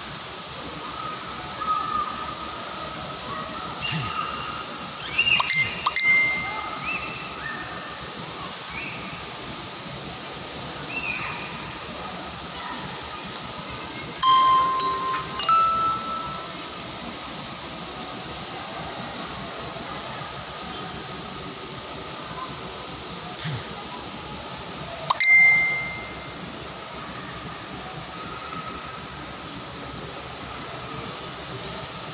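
Steady outdoor background noise, broken by a few short, high-pitched sounds in three clusters: about five seconds in, about fifteen seconds in, and about twenty-five seconds in.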